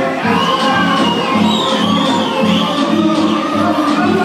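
Mizian (northern Bulgarian) folk dance music with a steady, regular beat, with high shouts over it through the first half or so.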